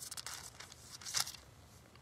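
Paper pages rustling as they are turned, in two short bursts, one at the start and one about a second in.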